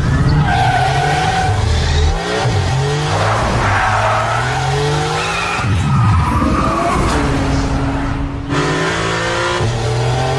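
Maserati MC20's twin-turbo V6 revving hard under acceleration, its pitch climbing through each gear and dropping back at several upshifts, with tyre squeal.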